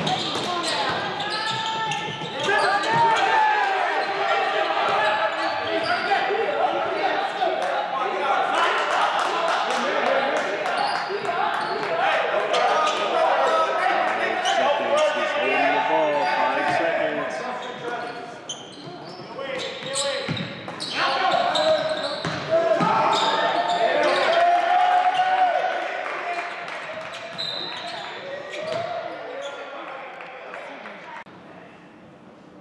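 Basketball game in a gym: a ball bouncing on the hardwood court among indistinct shouts and calls from players and spectators, echoing in the hall.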